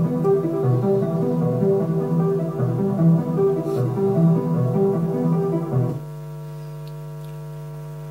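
Waldorf Blofeld synthesizer playing its Ricochet2008 arpeggio preset, a repeating pattern of low notes that stops about six seconds in. A steady electrical hum remains underneath, which the owner suspects comes from poorly shielded connecting leads.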